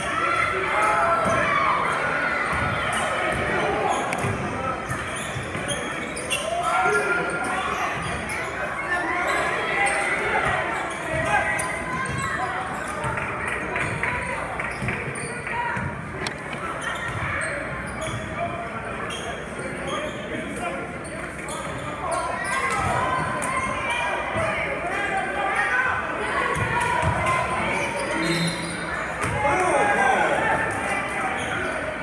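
A basketball being dribbled and bounced on a hardwood gym floor during live play, over the constant chatter and shouts of spectators in a large gym.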